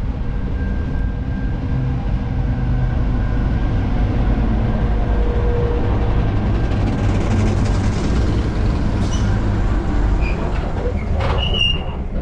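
Diesel locomotive standing at a platform, its engine running with a steady low rumble. Near the end come a few sharp clicks and a brief high squeak.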